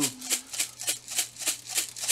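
A spice jar of dried minced onion being shaken over a skillet: a rapid, even rattle of the flakes inside the jar, about five shakes a second.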